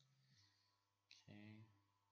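Near silence: room tone with a faint low hum. About a second in comes a brief, faint voiced sound from the artist, a short murmur or mouth noise with a click before it.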